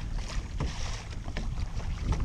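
Wind on the microphone and water washing against a sit-on-top kayak's hull in an ocean swell: a steady rushing noise, strongest in the low end.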